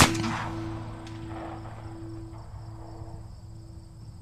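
A single sharp sound-effect hit right at the start, its echoing tail slowly fading over the next few seconds above a faint held tone.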